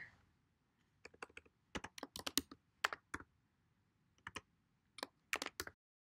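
Computer keyboard being typed on: short irregular runs of key clicks that stop just before the end.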